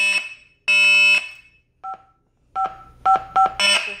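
A 2GIG alarm panel's built-in siren sounding its fire alarm in loud, long beeps about half a second each. It stops about a second in, and a few short key tones follow as the disarm code is tapped in on the touch screen.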